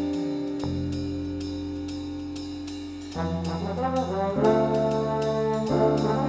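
Jazz big band playing live: a held chord fades away over about three seconds above a steady ticking beat. Then the brass comes in louder with short moving phrases.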